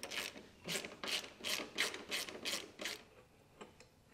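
Ratchet wrench with a 13 mm socket being swung back and forth to undo a muffler bracket bolt, the pawl clicking on each back-stroke in an even rhythm of about three strokes a second, stopping about three seconds in.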